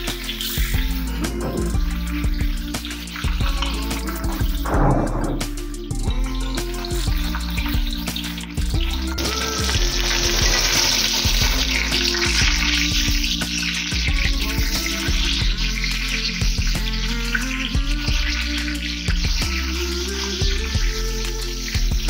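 Fish pieces shallow-frying in hot oil in an aluminium kadai, a steady sizzle that comes up strongly about nine seconds in, under background music.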